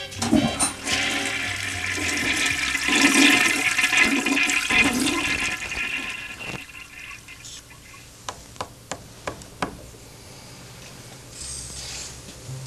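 Toilet flushing in a restroom stall, a loud rush of water that lasts about six seconds and then cuts off abruptly. It is followed by a few sharp clicks.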